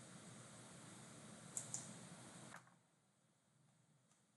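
Near silence: faint room hiss with two quick computer-mouse clicks in close succession about a second and a half in, then the sound cuts out to dead silence.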